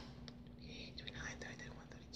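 Faint whispering, a woman counting under her breath, over a steady faint hum.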